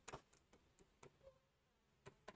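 Near silence with faint, irregular ticks of a pen tip tapping on an interactive display screen during handwriting, about six in the first second and a half.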